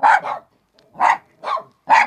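A small mixed-breed dog barking: four short, separate barks spread over two seconds.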